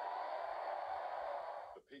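Stadium crowd cheering a try at a rugby league match, played back through a computer's speakers; the cheer cuts off abruptly near the end as the narration returns.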